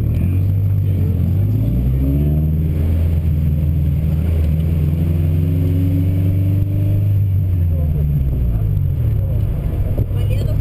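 Honda Civic EK9's four-cylinder engine revving up as the car launches from the start, pulling with rising revs for several seconds, then easing off with falling revs near the end.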